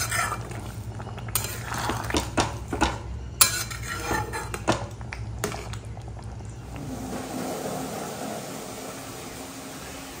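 A spatula scraping and knocking against an aluminium kadhai while it stirs a thin, watery jackfruit curry, with irregular clatters for about seven seconds. After that a faint steady hum is left.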